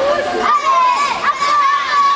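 Spectators, many of them high children's voices, shouting and cheering together to urge on swimmers in a race, with one voice holding a long call from about half a second in.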